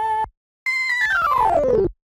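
A soundfont made from a sung voice sample, played on a MIDI keyboard: a quick rising run of notes breaks off just after the start, then after a short gap a fast run slides down in pitch for over a second and cuts off.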